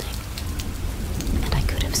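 Steady rain with a continuous low thunder rumble beneath it: an ambient rainstorm background.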